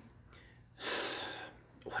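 A man's audible breath, a breathy rush under a second long, in a pause after he loses his words, followed near the end by a quick spoken 'what?'.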